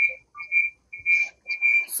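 A steady high-pitched whine at one fixed pitch, pulsing on and off about twice a second.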